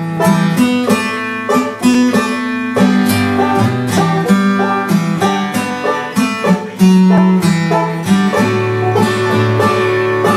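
Banjo and acoustic guitar playing a bluegrass instrumental break together, a quick run of picked notes over a steady bass line, with no singing.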